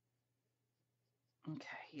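Near silence: room tone with a faint low hum, then a woman's voice near the end.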